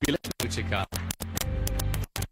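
Corrupted broadcast audio: narration and background music broken into stuttering fragments that cut in and out abruptly, a digital dropout glitch.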